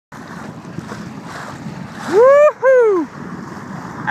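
Wind buffeting the microphone and choppy lake water around a small sailboat, a steady rushing noise. A little after two seconds in, a voice calls out twice, each call rising and then falling in pitch.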